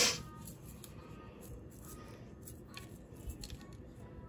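Quiet handling of seasoning shakers: a short rustling burst at the start, then faint clicks and rustles.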